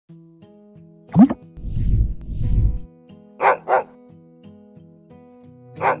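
Dog barks over a light music jingle: a short rising cry about a second in, a low rumble, then two quick barks about three and a half seconds in and another two at the very end.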